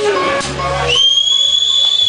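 Electric guitar notes, then a loud, high whistle cuts in about a second in. The whistle is held steady on one pitch and falls away at its end, typical of a two-finger whistle from the audience during a live show.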